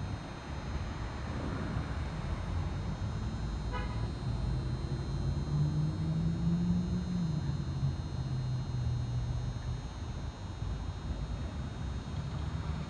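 Low rumble of road vehicles, with a short car-horn beep about four seconds in, followed by a steady engine hum for several seconds.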